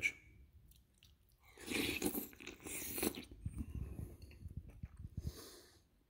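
A person eating a spoonful of smoked sausage and cabbage soup: after a quiet first second and a half, mouth sounds as the food is taken in, then irregular chewing.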